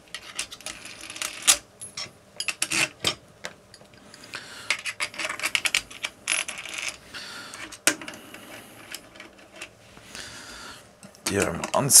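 Small steel screws clinking as they are picked up and set into the aluminium clutch cover of a Simson M500 moped engine, with light clicks and scraping of hand tools. A sharp clink about eight seconds in is the loudest.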